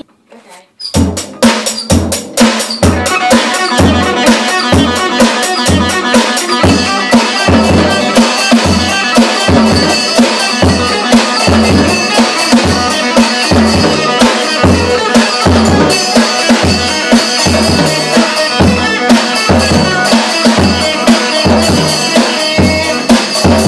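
A child playing a steady beat on a Mendini drum kit, starting about a second in: regular bass-drum kicks under snare hits and cymbal strikes.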